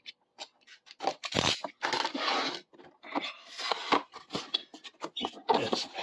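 Snap-off utility knife slitting packing tape on a cardboard box, heard as a run of short, uneven scraping strokes. Cardboard rubs and scrapes as the lid is worked loose and lifted off.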